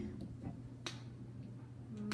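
A single sharp click a little under a second in, with a fainter tick before it, as a plastic squeeze bottle of mustard is handled and picked up off the table.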